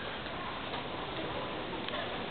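Steady background noise of a large open indoor hall, with a few faint ticks.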